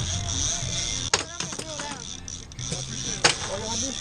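Boat's outboard motor running steadily at low speed, with two sharp knocks, about a second in and near the end, and brief high children's voices over it.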